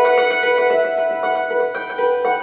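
Hammered dulcimer with 68 metal strings, struck with a pair of hand-held hammers: a quick run of ringing notes that sustain and overlap one another.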